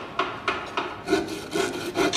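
A run of rasping strokes, about three a second, like a saw working through wood.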